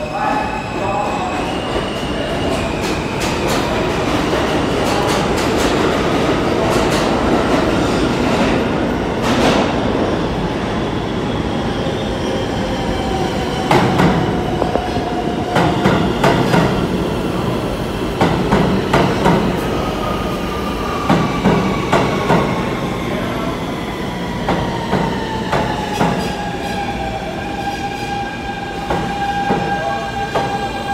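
R160B subway train with Siemens propulsion pulling into a station. Its rumble builds as it approaches, then its wheels clack over the rail joints in quick clusters as the cars pass. Its electric motors give a whine that falls in pitch as the train brakes toward a stop.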